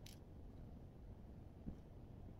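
Near silence: room tone, with one faint click at the start and a soft thump near the end.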